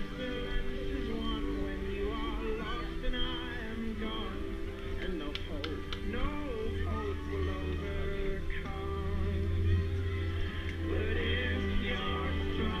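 Music with long held notes, with people's voices talking over it and a few sharp clicks about halfway through.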